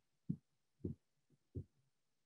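Three soft, dull thumps about half a second apart.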